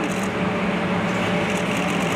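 Steady low mechanical hum over a noisy background hiss, level throughout.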